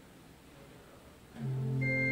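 Church organ coming in about one and a half seconds in with a held low chord, joined by higher sustained notes just before the end; before that, only faint room tone.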